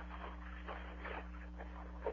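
Faint background sound picked up by the open broadcast microphones at a football stadium: a low steady hum under faint, indistinct crowd and field noise.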